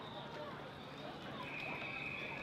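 Bankside spectators shouting indistinctly at a passing rowing crew, with a long, steady high whistle starting about one and a half seconds in.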